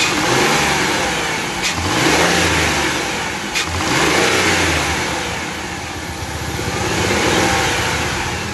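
Ford Windstar's 3.8-litre V6 engine running just after a fuel-injector cleaning, its speed rising and falling about four times. Two sharp clicks are heard in the first half.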